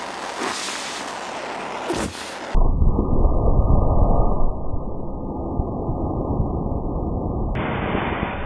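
Hiss of a small hand-torch flame with breath being blown out, then, about two and a half seconds in, a sudden loud, deep, muffled whoosh as a cloud of cornstarch dust blown through the flame ignites into a fireball.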